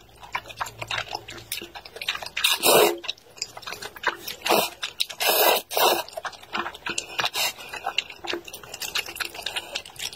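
Close-miked wet eating of wide, saucy flat noodles: sticky chewing with many small mouth clicks, broken by several louder slurps, the longest around three and five to six seconds in.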